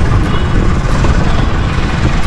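Wind buffeting the camera microphone outdoors: a loud, even rumbling noise that cuts in suddenly at the start.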